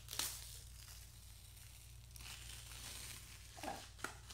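Clear adhesive strip being peeled off the skin at the hairline, a rough tearing sound. There is a brief burst right at the start and a longer spell of tearing in the second half.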